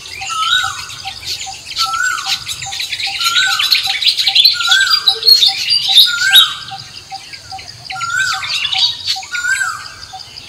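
Forest birds calling together. One bird's call repeats about once a second, over a fast steady pip and busy high chirping and squawking.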